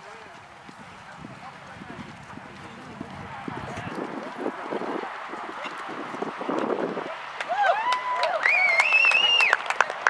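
Horse's hoofbeats on a sand arena during a show-jumping round. From about three-quarters of the way in come people's drawn-out whooping cheers, with a few claps near the end as the round finishes clear.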